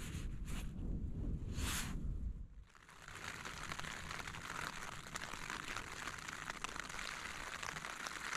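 Rain pattering steadily on the Terra Nova Solar Competition 1 tent, heard from inside. It starts about three seconds in, after a couple of short rustles over a low rumble.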